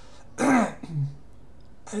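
A man clearing his throat once, a short sharp burst about half a second in, followed by a brief low vocal sound.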